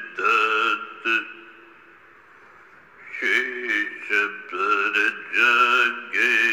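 A man chanting slowly in a melodic mantra style, holding each syllable long. The chanting breaks off about a second in and resumes about three seconds in.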